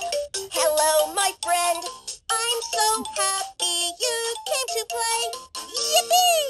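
VTech Rattle and Sing Puppy baby toy playing a bright electronic children's tune through its small speaker, a quick run of short notes.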